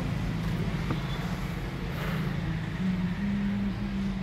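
A steady low hum of a running motor, its pitch stepping up slightly about three seconds in.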